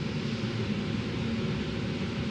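Steady low rumble with a fainter hiss: the room tone of a large hall, picked up through the microphone during a pause in speech.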